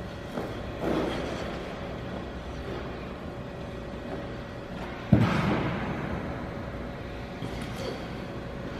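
Figure skate blades on rink ice: a soft swish about a second in, then a sharp thud about five seconds in as a single waltz jump lands, followed by a short scrape of the blade. A steady hum runs underneath throughout.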